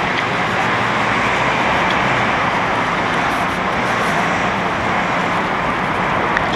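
Steady outdoor street noise: an even, unbroken traffic-like hiss and rumble.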